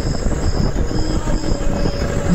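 Steady mechanical rumble with a high-pitched beep repeating about twice a second and a faint steady hum.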